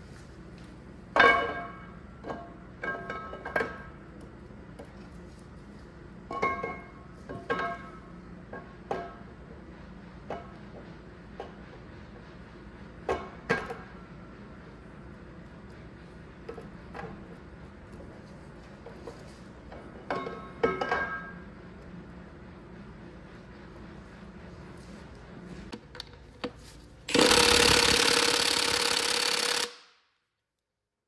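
Steel camshaft clinking and ringing against the cam bores of a Caterpillar C-10 diesel block as it slides out, in a handful of short metallic knocks. Near the end, a Milwaukee cordless impact wrench runs loudly for about three seconds.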